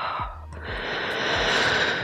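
A woman breathing slowly and audibly close to a headset microphone. A long, breathy exhale swells and then eases off near the end, as she relaxes.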